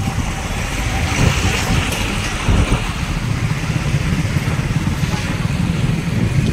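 Steady low rumble of a road vehicle under way, with wind buffeting the microphone.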